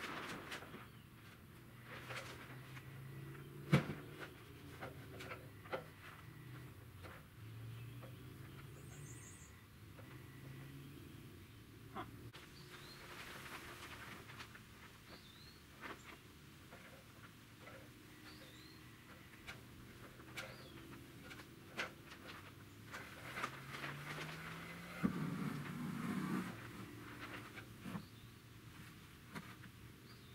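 Faint, scattered knocks and taps of a wooden rafter board being handled against a timber stud frame, the sharpest knock about four seconds in. Small birds chirp now and then.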